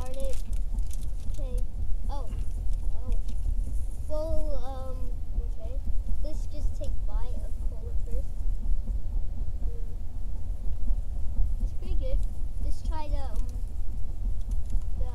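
Steady low rumble of road and engine noise inside a car cabin, with short snatches of voices over it.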